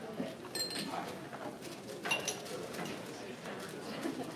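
Low crowd chatter in a busy bar, with two short clinks of dishes, about half a second in and again about two seconds in.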